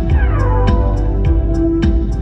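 Live electronic synth-pop: synthesizer chords and melody over a steady electronic drum beat, with a falling synth glide in the first second and a held synth note near the end.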